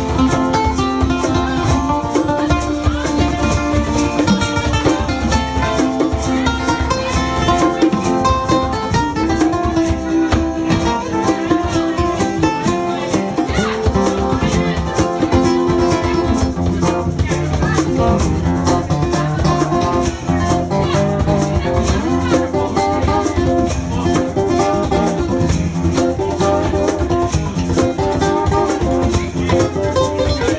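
Live acoustic band music: acoustic guitars strummed and picked over hand drums keeping a steady beat.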